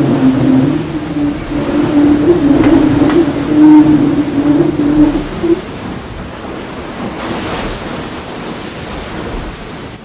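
The 60-foot racing sailboat SMA whistling at speed: a steady whistling tone over the rush of water along the hull, the noise the boat starts to make above 23–24 knots. The whistle stops about halfway through, leaving a quieter rush of water.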